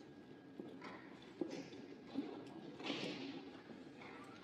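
Faint footsteps and shuffling of a small group standing and moving on a hard floor, with a few sharp light taps about a second and a half and two seconds in, and a louder rustle near three seconds.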